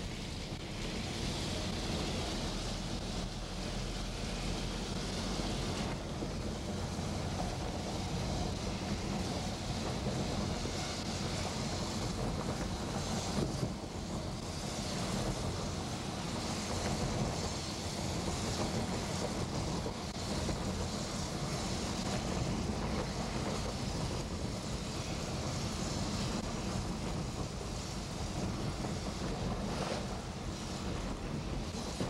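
Steady road noise inside a moving car: tyres running on the wet wood-plank road deck of the Oliver Bridge, with a low engine and drivetrain hum beneath a constant hiss.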